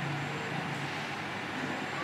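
Steady background ambience of the location sound, an even noise with faint indistinct low tones and no distinct event.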